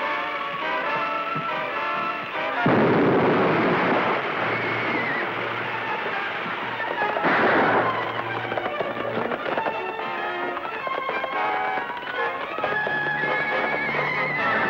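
Dramatic orchestral film score with a sudden loud blast about three seconds in that dies away over a couple of seconds: an explosive charge blowing a safe open. A second, shorter burst of noise comes about seven seconds in.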